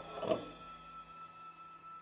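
Faint background music with a steady high thin tone; about a quarter second in, a brief soft sound as a glass lid is settled onto a frying pan.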